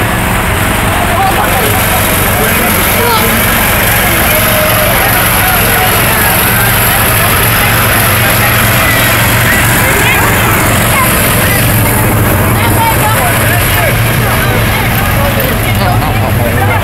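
Small engine of a riding lawn mower running steadily as it pulls a barrel train past, its low hum growing stronger about a quarter of the way in, with voices of people along the street.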